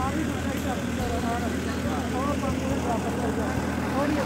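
Engine of a lake ferry running with a steady low hum as the boat moves across the water, with faint indistinct voices of people on board.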